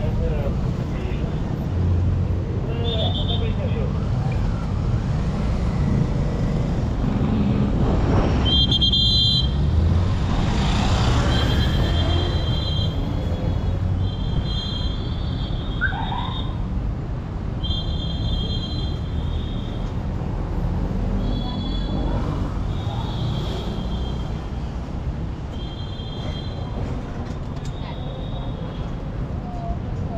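City street traffic: a steady low rumble of engines and tyres, with one vehicle passing close about eight to twelve seconds in. From then on a high-pitched tone keeps starting and stopping in short stretches.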